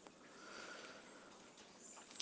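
Near silence: room tone with a faint intake of breath through the nose, about half a second in.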